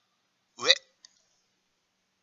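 A voice calls out one short word, "ue" ("up"), followed just after by a single faint click; otherwise silence.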